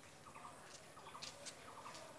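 Faint bird calls, three times, each a quick run of three or four notes.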